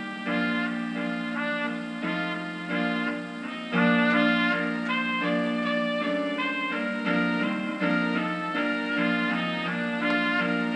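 Piano keyboard being played: a melody over chords, each note held level and several sounding together.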